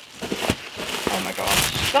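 Plastic packing wrap crinkling and rustling as it is lifted out of a cardboard shipping box, with a couple of knocks against the cardboard.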